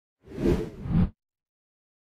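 Low whoosh sound effect of an animated logo intro, swelling twice in quick succession and cutting off suddenly about a second in.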